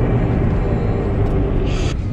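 Steady low rumble of road and engine noise inside a moving car's cabin, with a brief soft hiss near the end.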